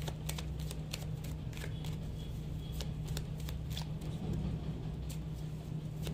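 A deck of tarot cards being shuffled by hand, the cards clicking and slapping against each other in quick, irregular strokes. A steady low hum runs underneath.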